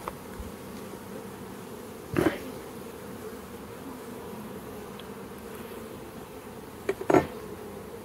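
Honeybees in a crowded, open nuc box humming steadily at a low level. Two brief bumps stand out, about two seconds in and again near seven seconds.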